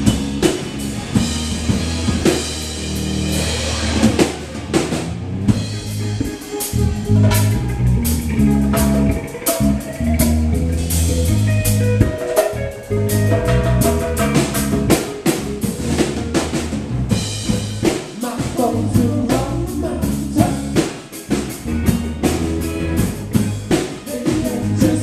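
Live band playing, with a drum kit hitting snare and bass drum and amplified electric guitars sustaining notes.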